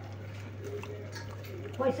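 Steady low hum and faint hiss of a gas stove burner heating a steel saucepan of water that is just starting to boil. A man's voice starts near the end.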